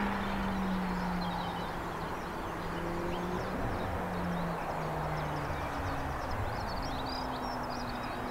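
Outdoor ambience: a steady low drone with a few held low tones that shift in pitch every couple of seconds, and faint bird chirps scattered above it.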